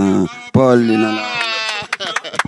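A man's voice: the tail of a word, a brief pause, then one long drawn-out vocal sound held for over a second with its pitch bending. Hand claps start right at the end.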